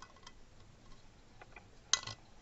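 Light metal clicks and taps as a governor drive gear is fitted by hand onto its pin inside a small stationary engine's crankcase, with one sharper click near the end.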